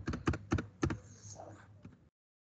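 Computer keyboard keys being pressed: a handful of separate keystrokes at an uneven pace as an entry is typed.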